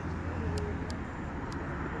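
A steady low background rumble, with faint distant voices and a few faint clicks.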